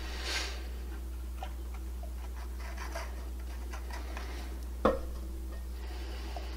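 Faint scattered ticks and taps from a plastic glue bottle and a small wooden piece being handled, with one sharper click about five seconds in, over a steady low hum.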